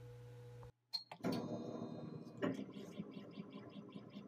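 Laser cutter's stepper motors driving the laser head through an engraving pass with the laser off, a faint whirring that picks up a regular pulse of about five or six strokes a second, two and a half seconds in. Before that, a steady low hum breaks off suddenly in a short cut.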